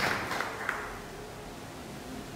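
The last scattered claps of an audience's applause, dying away within the first second, leaving quiet room tone in a hall.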